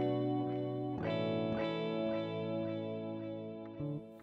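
Electric guitar played through the Analog Delay plug-in, an emulation of the 1970s E1010 bucket-brigade delay: one chord rings, then a new one is struck about a second in and rings on, fading toward the end.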